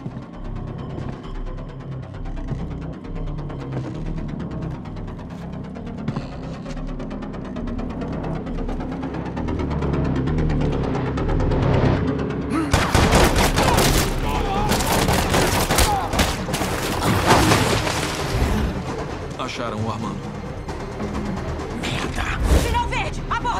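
Film soundtrack: a tense score with low pulses builds for about twelve seconds. Then comes a long stretch of rapid automatic gunfire over the music, which thins out near the end.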